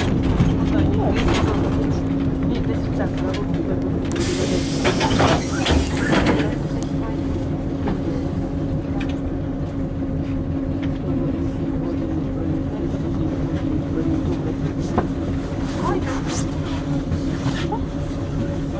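LAZ-695N bus's ZIL V8 petrol engine running as the bus pulls up at a stop and idles steadily. About four seconds in comes a burst of air hiss lasting a couple of seconds, from the bus's pneumatics.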